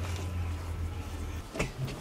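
A low steady hum that stops about a second and a half in, then a short knock as the motorhome's bench seat and cushions are handled.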